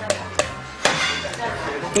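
A metal spoon knocking against a stainless steel bowl as food is put in and stirred: three sharp clinks within the first second.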